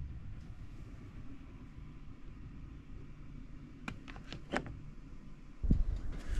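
Faint steady low rumble of background noise, with a few faint clicks about four seconds in. Just before the end a louder low rumble sets in.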